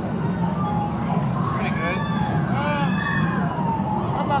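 Busy arcade din: a steady low hum of machines and people, with electronic game sounds sliding up and down in pitch from about halfway through.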